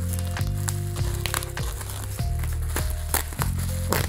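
Background music with held tones, over the crinkling and crackling of plastic bubble wrap being handled and pulled open by hand.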